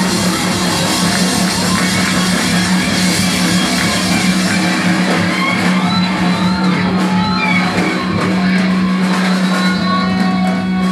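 A rock band playing live on electric guitars and drum kit over a steady low drone. About halfway through, the deepest low end drops away and single guitar notes bend up and down over the sustained sound.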